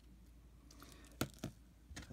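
Quiet hand work with small metal jewellery tools: two sharp clicks about a quarter second apart, a little past a second in.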